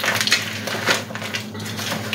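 A spoon stirring crushed dry ramen noodles through coleslaw mix in a bowl: irregular crunching and rustling.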